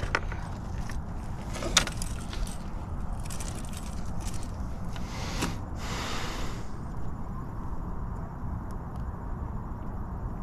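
Light clicks and scrapes of a hard plastic crankbait and its treble hooks being worked loose from a crappie's mouth by hand, over a steady low rumble. The clicks thin out after about seven seconds.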